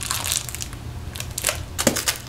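Teeth biting into and chewing a Butterfinger candy bar: a series of irregular crisp crunches. The bar is hard, which the eater takes to mean it is stale.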